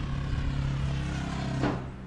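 Steady low engine hum of a vehicle running nearby, holding one pitch, with a brief short voice-like sound near the end.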